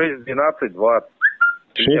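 Men talking on a telephone line, with a short high chirp about halfway through that rises briefly and then holds.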